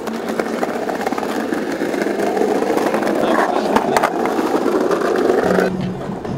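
Skateboard wheels rolling over rough pavement close by, growing louder, with a couple of sharp clacks about four seconds in.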